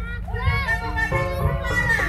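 Voices calling out in gliding shouts, then struck, sustained mallet-percussion notes of the dance accompaniment come in about a second in, over a low steady rumble.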